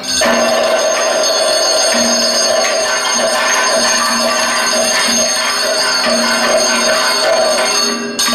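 Kathakali percussion accompaniment playing steadily for the dance, with ringing metal cymbals and gong over the drums and sustained bright ringing tones throughout.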